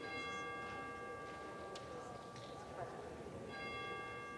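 A church bell tolling faintly: one stroke at the start and another about three and a half seconds in, each ringing on with a slow fade.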